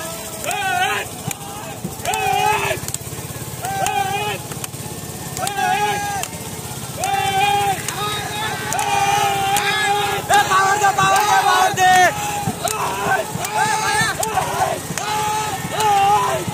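Paddlers of a long racing boat giving rhythmic shouted calls, one about every second and a half, in time with their strokes, over a low steady engine hum.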